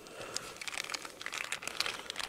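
A specimen bag crinkling as it is handled, a light, irregular crackle, while a zircon crystal is taken out of it.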